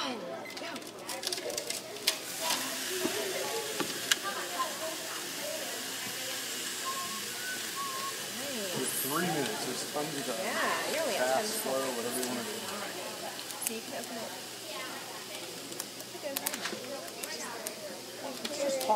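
Sand running steadily from an inverted water jug into a bucket hung beneath a test bridge, a continuous hiss as the bridge is loaded, with voices chattering behind.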